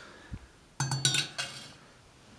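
A quick cluster of clinks with a short ring, about a second in: the glass vase and brass fittings of a small Turkish hookah knocking together as it is handled, after a soft knock just before.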